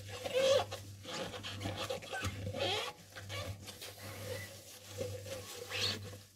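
Wet rubber dishwashing gloves rubbing over a soapy porcelain cup, giving short irregular squeaks over a wet rubbing sound. A steady low hum runs underneath.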